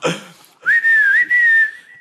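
A person whistling a catcall: one held note about a second and a half long that slides up at the start, wavers once in the middle, then holds steady.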